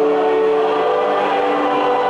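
Church choir singing long held notes of a hymn, the voices moving to new notes now and then.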